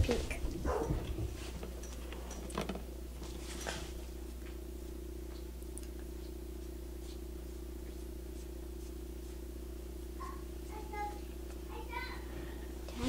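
A steady low hum from something running in the room, with a few faint clicks.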